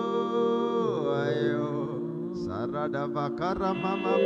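A man singing a worship song into a microphone over sustained keyboard-like chords: a long held note that slides down about a second in, then a wavering run of sung notes near the end.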